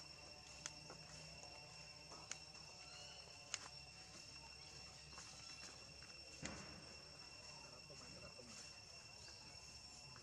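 Faint, steady insect chirring: two even high tones that hold throughout, with a few soft clicks here and there.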